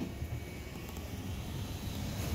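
Low, steady rumble of an open-sided shuttle cart rolling along the road: tyre and wind noise on the microphone.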